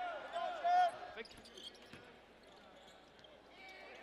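Basketball shoes squeaking on a hardwood court in a quick series during play, with a couple of ball bounces. After that the arena crowd murmurs quietly.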